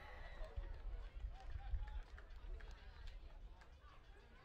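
Faint, distant shouts and calls of rugby league players across an open field, over a low, uneven rumble that is loudest about one and a half seconds in.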